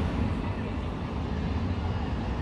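Street traffic noise: a car that has just driven past fades away, leaving a steady low rumble of road noise.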